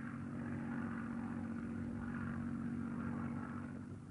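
Propeller-driven aircraft engine running in flight, a steady drone.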